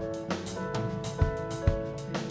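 Live band music with no singing: acoustic guitar and electric bass holding notes over a drum kit, with kick drum and cymbal hits keeping a steady beat.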